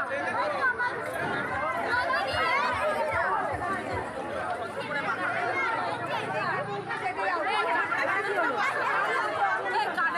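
Many voices of women and girls talking and calling out at once, overlapping without pause.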